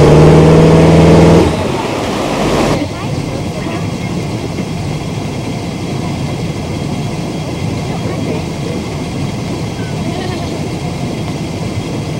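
A ski boat's engine running hard while towing two skiers, with water rushing behind it; it drops off about a second and a half in. From about three seconds in, a quieter, steady engine hum with water noise.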